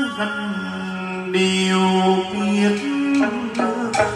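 Chầu văn (hát văn) ritual singing: a male voice holds long wordless vowel notes, stepping from one pitch to the next, with a moon lute (đàn nguyệt) plucked beneath.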